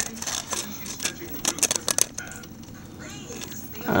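Duct tape wallet being handled and opened: a string of short crinkles and clicks from the stiff tape, busiest in the first two seconds and then thinning out.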